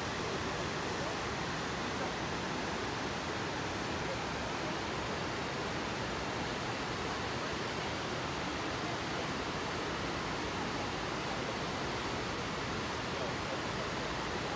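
Fukiwari Falls, a broad waterfall spilling over a wide rock shelf, making a steady rushing of falling water that never changes in level.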